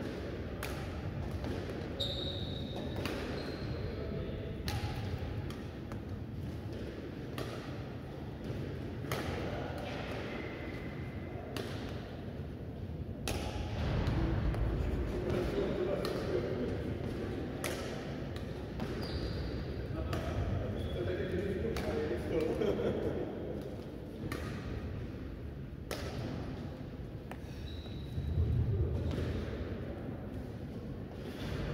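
Badminton rackets striking shuttlecocks in a steady rally-drill rhythm, roughly one sharp hit a second, echoing in a large sports hall, with brief squeaks of court shoes on the floor.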